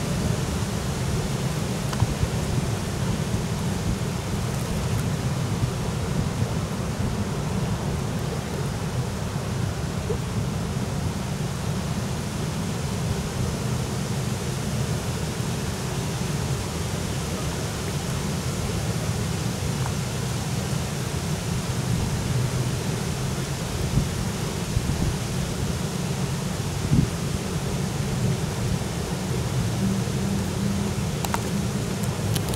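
Steady wind noise on the microphone: a continuous low rumble with a lighter hiss over it and a couple of small knocks near the end.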